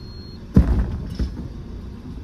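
Steady low rumble of the van's engine heard inside the cab, with a sudden heavy thump about half a second in and a lighter knock about a second in.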